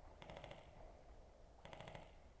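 Two short, faint bursts of rapid clicking, one near the start and one near the end, like distant airsoft electric guns firing in full-auto.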